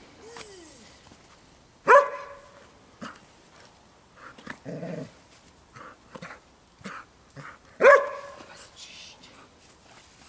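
Young Belgian Malinois on a leash barking at a rag being teased in front of it in bite-work training: two loud barks, about two seconds and eight seconds in, with a short whine near the start and softer yips and growly noises between.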